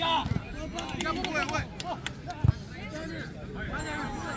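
Voices of players and spectators calling out across the field, not close to the microphone, with one sharp thump about two and a half seconds in.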